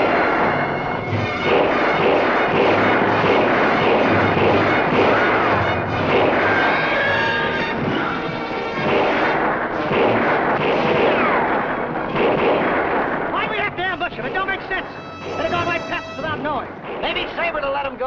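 A dense shootout, gunshots firing in quick, overlapping succession with a few falling whines among them. Near the end the firing thins out and a wavering pitched sound comes in under the shots.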